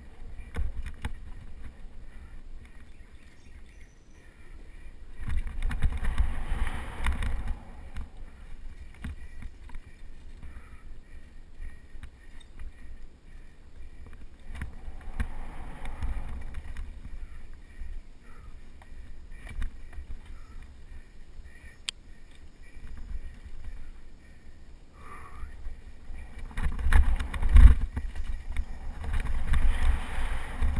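Mountain bike ride heard from a bike-mounted action camera: wind buffeting the microphone over tyre rumble on a dirt trail, with short rattles and clicks from the bike over bumps. The wind rush swells about five seconds in, again midway, and loudest near the end.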